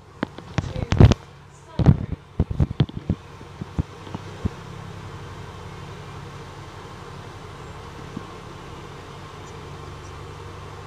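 Inside a double-decker bus: a run of sharp knocks and clatters for the first four seconds or so, loudest about a second and two seconds in. It settles into the bus's steady low running drone.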